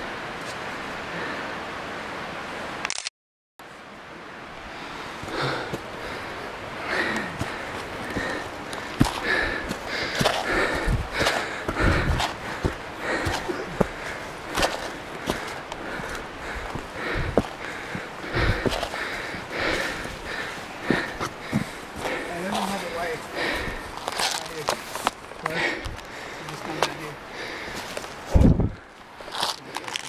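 Running footsteps on rocks and dry leaves, with a rapid rattling and knocking from the jostled gear and hard breathing from the runner. The sound cuts out completely for a moment about three seconds in.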